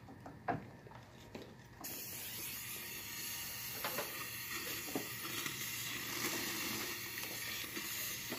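Dental suction switching on about two seconds in and running with a steady hiss. A single click comes just before it.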